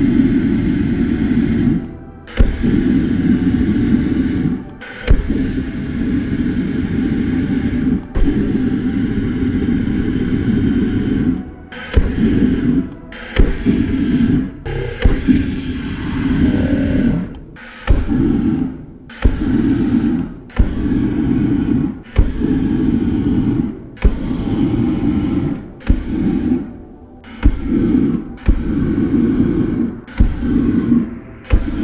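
Burner flame firing through a plexiglass observation combustor, a low roar in repeated bursts of one to two seconds, each starting with a sharp pop and cutting off abruptly.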